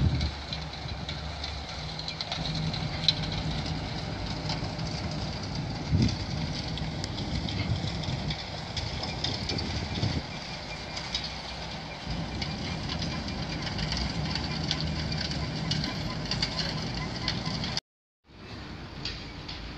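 Steady low engine drone across the harbour water, with faint crackling over it; it cuts off suddenly just before the end.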